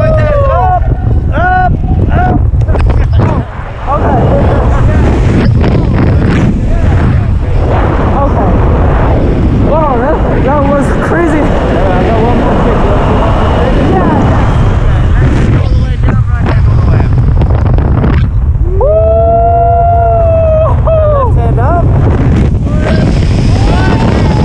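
Loud, steady freefall wind roar buffeting the camera microphone during a tandem skydive, with wordless yells and whoops rising and falling over it, the longest one a little before the end.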